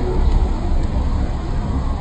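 Steady loud rumbling noise with a hiss over it, strongest at the very bottom.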